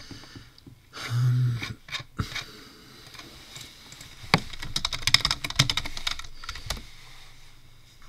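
Typing on a computer keyboard: a quick run of keystrokes from about four to seven seconds in.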